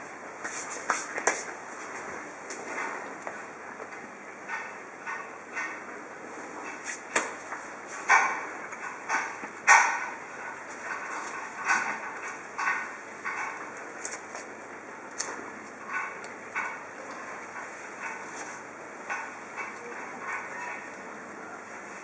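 Scattered light taps and clicks of hands and utensils handling food on a plastic cutting board and countertop while sandwich layers of bread and bacon are put in place, over a steady low hiss.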